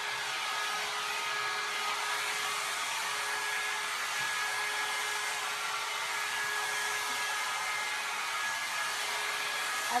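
John Frieda Salon Style 1.5-inch hot air brush running on a steady blast of air, with a constant motor hum under the whoosh.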